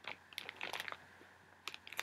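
Light crinkles and clicks of a clear plastic bag being handled as floss skeins are taken out. A few soft ticks come about half a second in, and a couple more near the end.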